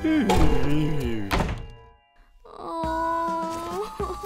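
Cartoon slapstick sound effects: gliding pitched sounds and a loud thunk about a second and a half in, as of a collision. After a short silence, a held music chord follows.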